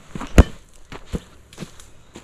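Footsteps walking on a dirt path covered in dry leaf litter, about two steps a second, with one louder thump about half a second in.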